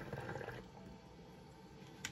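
Portable hookah bubbling softly as smoke is drawn through its hose. The bubbling stops about half a second in, leaving a faint hush.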